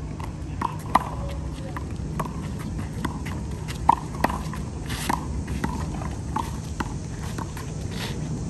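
Small rubber handball being slapped by hand and smacking off a concrete wall and court in a rally: a string of sharp knocks, the loudest about a second in and around four seconds, with sneaker footsteps on concrete and a steady low hum beneath.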